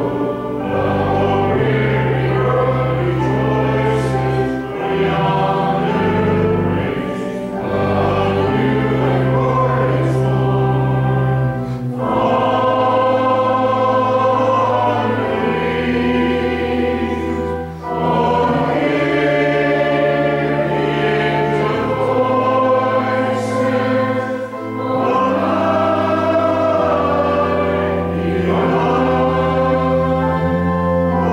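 Choral music: a choir singing a slow hymn in held chords over sustained low notes, in phrases a few seconds long with short breaths between them.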